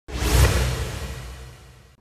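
Intro-logo swoosh sound effect with low sustained musical tones beneath it. It starts suddenly, peaks within the first half second and fades away over the next second and a half.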